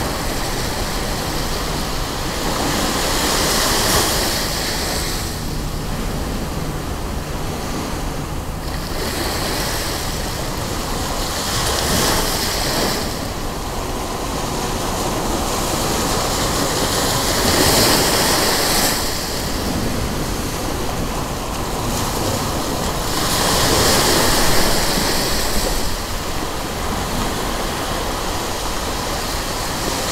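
Ocean surf breaking on a sandy beach: a steady wash of noise that swells and eases roughly every six seconds as each wave comes in.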